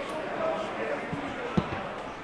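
Football struck with one sharp, hard thud about one and a half seconds in, with a lighter touch shortly before it, over players shouting on the pitch.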